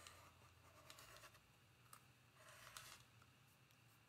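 Faint rotary cutter rolling through stacked cotton fabric squares against a ruler on a cutting mat: two short scratchy cuts, one at the start and one about two and a half seconds in.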